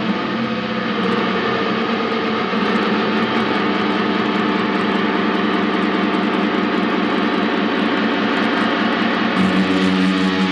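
Harsh experimental noise drone, a dense distorted wash with a fast fluttering pulse running through it. Clearer pitched tones come back in near the end.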